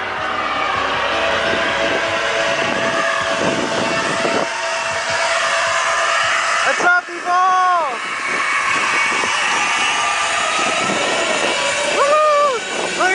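Festival crowd chatter over distant music from an outdoor stage sound system, with a drawn-out rising-and-falling call from a voice about seven seconds in.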